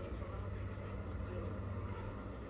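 Outdoor street background: a steady low rumble with faint voices in the distance.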